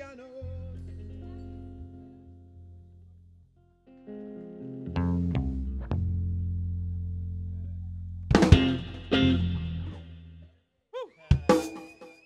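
Live rock band with electric guitar, bass guitar and drum kit, striking chords and low notes and letting them ring out and fade, with sharp drum hits in between. The sound stops briefly twice, about three and a half and ten and a half seconds in.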